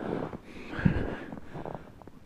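Faint irregular crunching and scuffing of someone walking on frozen, snow-dusted ground while handling the camera, with a short low sound about a second in.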